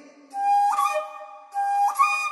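Bamboo transverse flute playing a short melodic phrase: a held lower note enters about a third of a second in, steps up to a higher note, drops back, and steps up again near the end.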